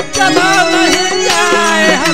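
Indian devotional folk music playing as an instrumental passage. A melody line bends up and down over held low notes, with light percussion strokes.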